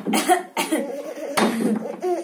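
A child laughing: a few sharp, breathy bursts followed by voiced, up-and-down laughter.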